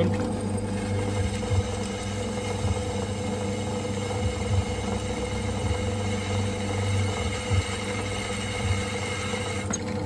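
Bench drill press running steadily, its twist bit drilling into a steel wheel bolt lubricated with oil.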